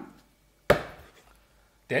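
A single sharp knock about two-thirds of a second in, dying away over most of a second, between stretches of near silence.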